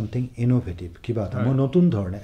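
A man talking in a radio studio discussion; speech only.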